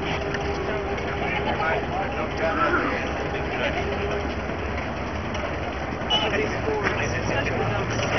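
Outdoor crowd ambience: scattered background voices over a steady low rumble of a vehicle engine running.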